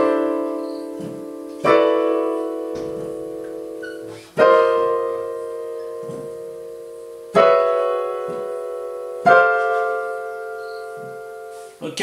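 Technics digital piano: five six-add-nine chords played one after another with the right hand, each struck and left to ring and fade before the next. The first change moves up a whole step and the rest climb chromatically.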